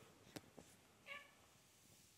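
Seal point Ragdoll cat giving one short, faint meow about a second in, after a light click.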